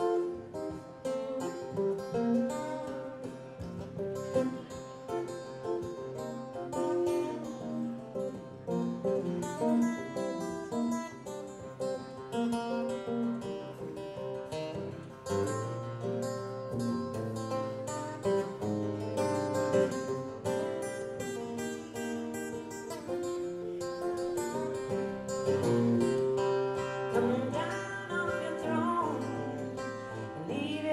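Live band playing the instrumental opening of a slow rock ballad, led by picked guitar. A low bass part comes in about halfway through.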